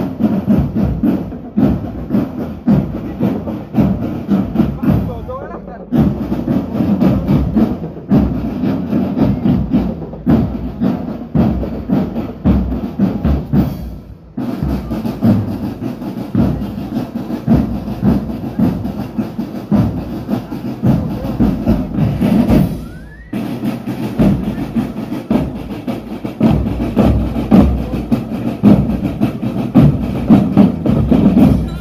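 Marching drum band playing snare drums and bass drums together in a driving rhythm, with a few brief pauses between phrases.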